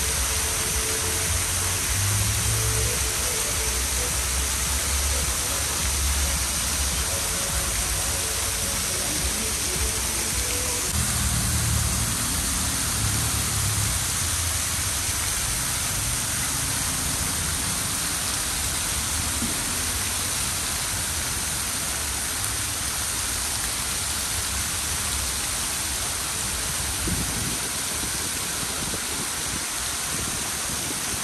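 Fountain jets spraying and falling back into a stone basin: a steady hiss and splash of falling water, with a low rumble of passing traffic now and then.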